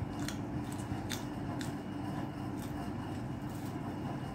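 Crisp crunches and snaps of raw vegetables being eaten and torn apart by hand, about five sharp crackles at uneven intervals.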